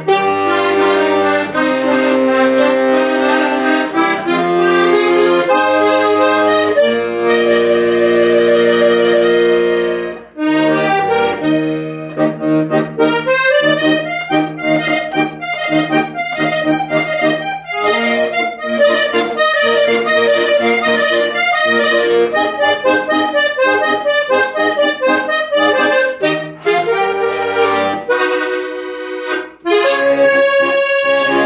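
Vallenato three-row diatonic button accordion, tuned a half step above A-D-G, playing a romantic vallenato tune. About ten seconds of long held chords, then a short break and a faster run of quick melody notes over the chords, easing off near the end.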